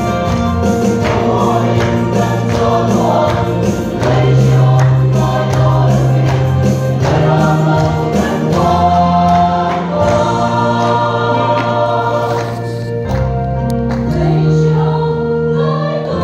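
Gospel music: a choir singing over instrumental accompaniment, with held bass notes that change every second or two.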